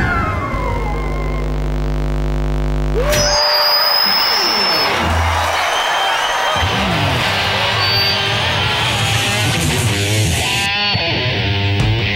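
Electric guitar music: a chord held and ringing for about three seconds, then a sudden switch to a denser, noisier guitar-led passage with sliding notes, and a steady rock beat starting near the end.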